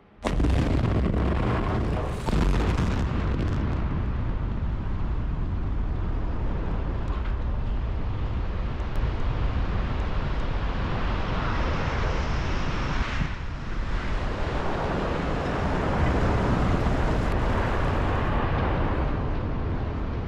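Continuous deep rumble of the concrete cooling towers collapsing after their implosion.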